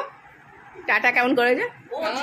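Dog whining and yipping in a short run of pitched cries, about a second in.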